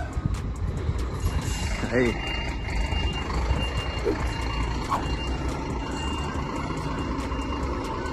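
A vehicle's reversing alarm beeping in a high, thin tone, starting about two and a half seconds in, over a steady low rumble of truck engines.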